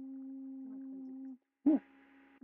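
A man humming one steady, held note for about a second and a half. After a short pause comes a brief, much louder vocal sound that falls in pitch, near the end.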